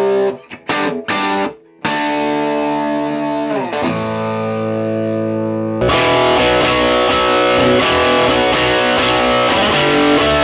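Overdriven electric guitar, a Les Paul through a Marshall valve head into Marshall PA column cabinets. It opens with short choppy chords, then held chords with a slide down in pitch. About six seconds in, the sound cuts suddenly to fuller, denser crunchy riffing through the Marshall 1991 4x10 PA columns, which sound a bit boxy to the player.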